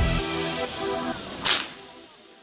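Electronic dance music with a deep bass beat drops its bass and fades out. About one and a half seconds in comes a single sharp whip crack: a long whip lashing a spinning top on paving.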